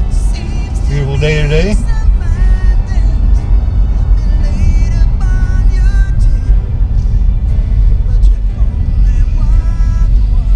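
Steady low rumble of a car driving, heard from inside the cabin, with music playing over it.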